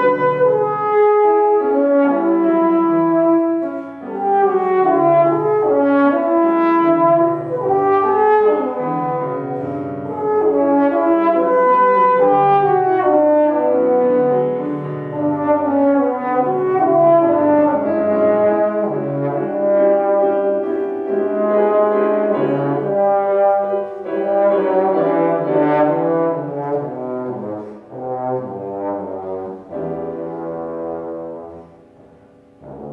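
Trombone playing a moving melodic line of sustained notes, accompanied by grand piano.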